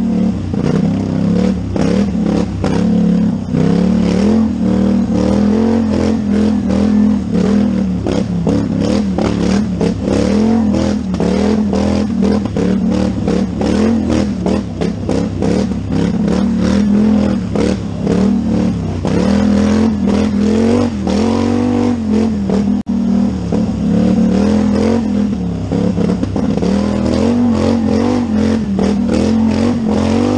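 Polaris Scrambler ATV's parallel-twin engine revving up and down continually under hard acceleration and throttle changes, ridden fast over a rough dirt race trail, with frequent knocks and clatter from the quad over the bumps.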